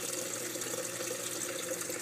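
Steady rush of water circulating in a saltwater reef aquarium, driven by two pumps and a wave maker, with a faint steady hum underneath.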